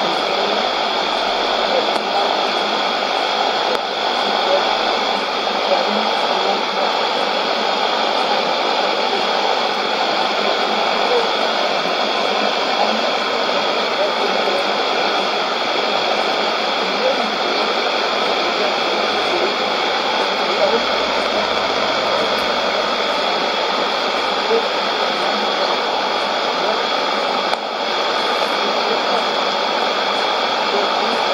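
Sony ICF-2001D shortwave receiver tuned to 11530 kHz AM, giving a steady hiss of static and noise, with any signal weak under it.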